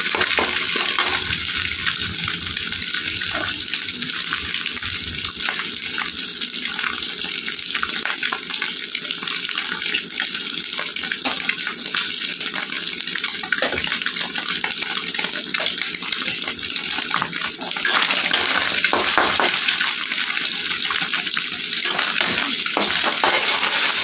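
Scrambled eggs sizzling steadily in a steel kadai as a steel spatula stirs them, with frequent clicks and scrapes of the spatula against the pan. The sizzle grows a little louder about 18 seconds in.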